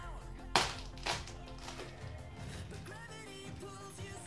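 Two sharp cracks about half a second apart, the loudest sounds here: a filled hollow eggshell smashed on a child's head. Background music plays throughout.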